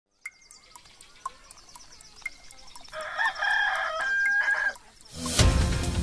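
A clock ticking about four times a second, with a rooster crowing once in the middle, then theme music coming in loudly near the end.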